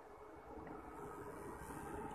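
Faint, steady electrical hum and hiss from a running DC-to-AC power inverter and transformer charger under load, pushing about 26 amps into a 12 V battery, growing slightly louder toward the end.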